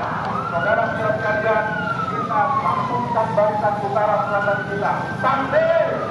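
A wailing siren: its pitch rises, falls slowly over about three seconds, then rises again near the end.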